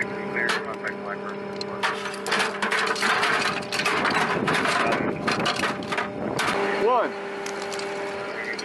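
Metal clinking and rattling of a linked machine-gun ammunition belt being handled and loaded, busiest from about two seconds to six and a half seconds in, over a steady low hum.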